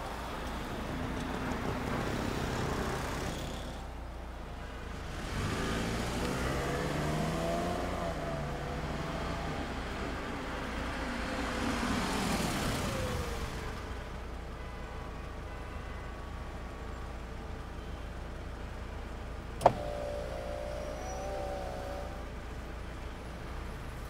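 Car engines running, their pitch rising and falling as they rev. One sharp click late on.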